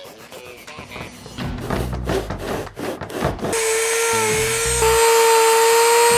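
A blade shearing and shaving a block of EVA foam, then, about three and a half seconds in, a Dremel rotary tool starts and runs with a loud, steady whine as it grinds into the foam.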